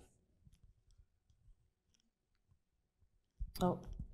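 Near-silent room tone with a few faint, scattered clicks in the first second and a half, then a voice begins near the end.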